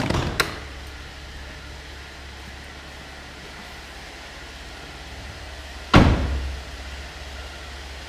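2009 Chevrolet Traverse's driver door: two latch clicks as it opens at the start, then a single loud slam as it is shut about six seconds in, over a steady low hum.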